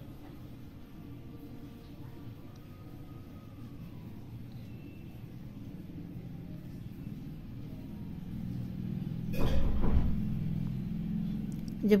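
A flat metal spatula stirs and scrapes ghee as it melts in a metal kadhai, over a steady low hum. There is one louder scrape or knock about nine and a half seconds in.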